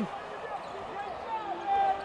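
A basketball bouncing on a hardwood court, with faint voices in the background.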